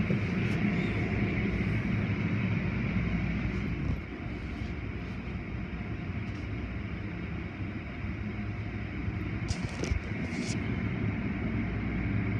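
Automatic tunnel car wash equipment running: a steady low mechanical hum under rushing water spray. It drops in level about four seconds in, and a couple of short rustles come near the end.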